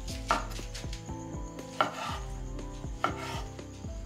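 Large kitchen knife chopping raw beef on a wooden cutting board: three sharp knocks about a second and a half apart, each with a brief slicing hiss.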